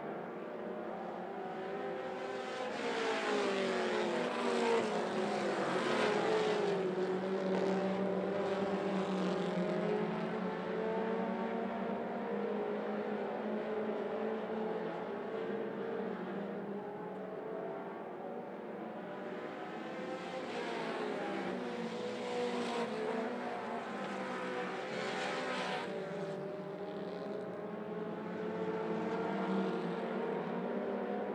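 A field of mini stock race cars running at racing speed on a dirt oval. Several engine notes rise and fall against one another, swelling twice as the pack comes by.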